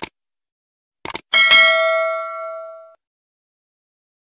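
Subscribe-button animation sound effect: a mouse click, then a quick double click about a second in, followed by a single bell ding that rings and fades out over about a second and a half.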